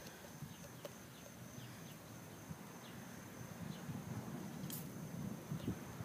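Quiet outdoor ambience: faint short chirps about once a second over a thin steady high tone, with low handling rumble and one sharp rustle about two-thirds of the way through.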